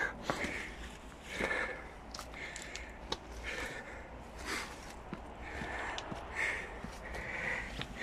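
A person breathing heavily close to the microphone, puffs coming about once a second, while walking with faint footsteps on a stony dirt path.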